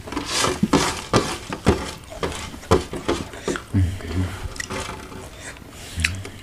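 Close-up chewing of crisp ghost pepper snack flakes: a run of quick, irregular crunches, with a closed-mouth "hmm, hmm" hum about four seconds in.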